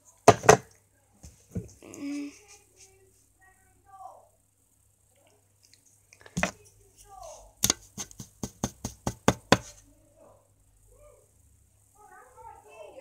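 Knocking on a door: a couple of knocks at the start and one about six seconds in, then a quick run of about nine knocks in under two seconds.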